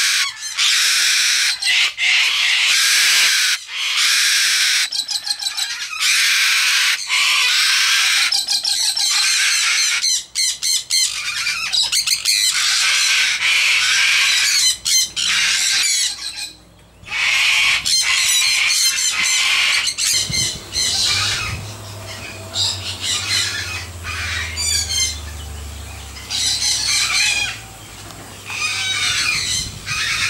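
Cockatoos screeching, one harsh scream after another with only a brief lull about sixteen seconds in. The calls thin out in the second half, where a low steady hum sits underneath.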